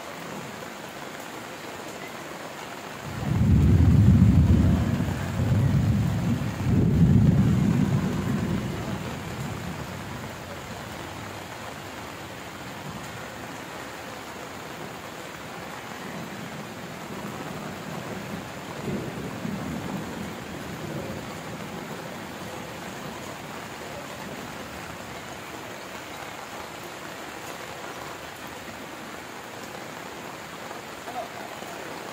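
Steady heavy rain falling on a corrugated metal roof. A few seconds in, a long rolling rumble of thunder builds, swells twice and fades over about six seconds, and a fainter rumble comes back about twenty seconds in.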